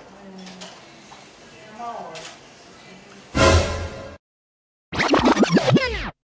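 Edited soundtrack: faint voices in the background, then a short loud noisy burst that cuts off abruptly into a moment of dead silence, then a rapid run of high, squeaky falling glides, like sped-up audio.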